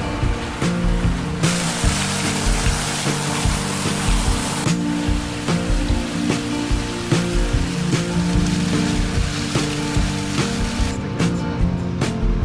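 Background music with a steady beat and sustained notes. A steady hiss lies over it for the first few seconds.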